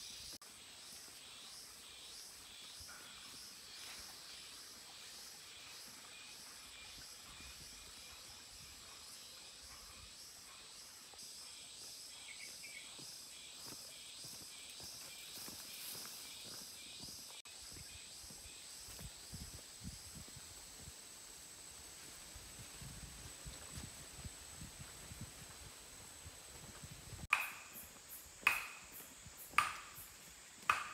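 Forest insects chirping in a fast, pulsing drone over a steady high whine, with faint footsteps on a dirt path. Near the end, loud sharp sounds repeat about once a second.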